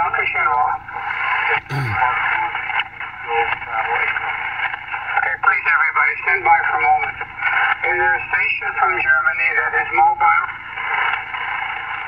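Single-sideband voice received on 40 m, coming from a Yaesu FT-897 transceiver's speaker: thin, narrow-band speech over steady band hiss, the words not made out. A brief low vocal sound from someone in the car comes about two seconds in.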